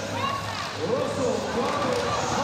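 Raised voices calling out, echoing around a large indoor arena during a BMX race.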